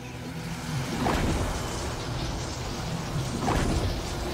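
Anime sound effects: a steady rumbling whoosh with a low hum underneath, swelling slightly about a second in.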